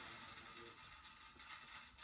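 Plastic game-board spinner whirring faintly after being flicked, stopping near the end.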